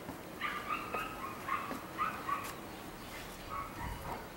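A dog barking: a quick run of about six short barks in the first half, then one more near the end.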